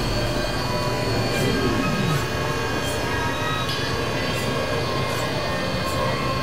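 Dense wall of overlapping synthesizer drones and noise, many steady tones sounding at once. A single falling glide slides down about a second in, and faint clicks come at irregular intervals.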